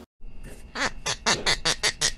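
Intro sound effect for the channel's logo card: a quick run of about nine short, sharp pulses, roughly four or five a second, starting just after a cut to silence.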